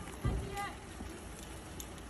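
Outdoor street noise with faint voices in the background, broken by a single low thump about a quarter of a second in and a brief pitched call just after.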